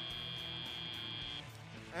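End-of-match buzzer on a robotics competition field: one steady high tone that cuts off about one and a half seconds in, over steady background music.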